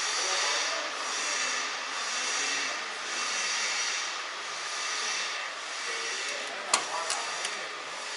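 A steady hiss that swells and fades slowly, with a few sharp clicks a little under seven seconds in.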